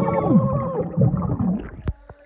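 Several people shouting together underwater, their voices muffled and bubbling as heard with the microphone under the surface. The shouts fade about a second and a half in, and a sharp click comes near the end.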